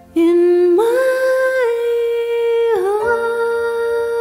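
Soundtrack music: a single voice humming a slow, wordless melody in long held notes that glide from one pitch to the next. It comes in just after the start over quieter ambient music.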